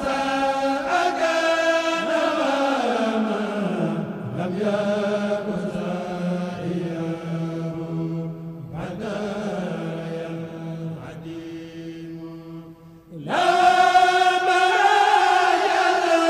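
A Mouride kurel chanting an Arabic khassida (devotional poem) a cappella, in long held notes. Early on the melody slides slowly down to a low held note. After a brief drop about 13 seconds in, a louder new phrase begins.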